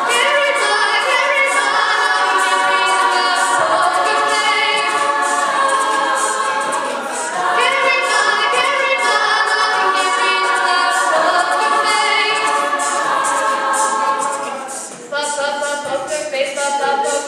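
Mixed men's and women's choir singing a cappella in several parts, holding long chords. The sound drops briefly about a second before the end, then the voices come back in.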